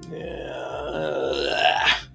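A man's drawn-out groan, growing louder over about two seconds and cutting off sharply.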